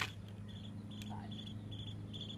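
Insects chirping outdoors in a steady pulsed rhythm, about three chirps a second, over a low steady hum. A single sharp click sounds right at the start.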